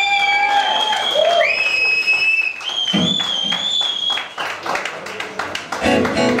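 Club audience applauding, with several long, high whistles over the clapping; the applause thins out in the second half.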